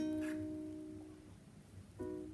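Background music: a plucked-string chord from a guitar or ukulele rings out and fades over about a second. A new chord is struck right at the end.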